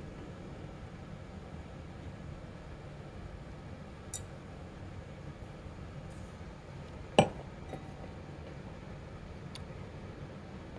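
A stemmed beer glass clinks sharply against a hard surface about seven seconds in, with a short ring after it. There is a fainter tap a few seconds earlier, all over a steady low hum.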